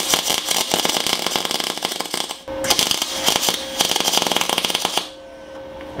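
MIG welding arc crackling and spitting with the welder at its full 250-amp setting, in two runs of about two and a half seconds each with a brief break between. At this setting the arc is burning straight through the thick steel into the other side.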